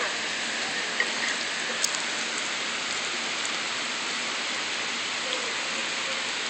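Steady rain falling, an even hiss with no break, with a couple of faint ticks about one and two seconds in.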